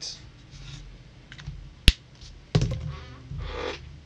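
A single sharp plastic click as a Copic marker is handled while being put away, followed about half a second later by a rougher handling sound as the markers are rummaged for the next colour.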